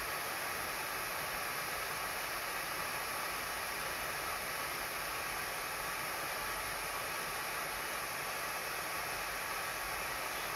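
Gas burner flame hissing steadily under a ring stand, heating magnesium sulfate hydrate to drive off its water of hydration.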